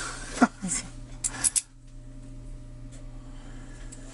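Light metallic clicks and taps from a brass lock cylinder and small padlock parts being handled, a few in the first second and a half. After that only a quiet room with a low steady hum.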